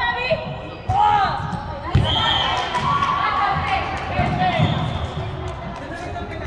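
Volleyball rally in a large sports hall: the ball is struck sharply twice, about one and two seconds in. Players shout and call out around the hits.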